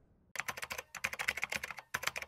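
Computer-keyboard typing sound effect: a quick, uneven run of key clicks starting about a third of a second in, with two brief pauses.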